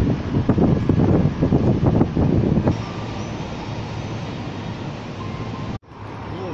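Wind buffeting the microphone over city street traffic noise for the first couple of seconds. After an abrupt cut a quieter, steady traffic hum follows, and a brief dropout comes just before the end.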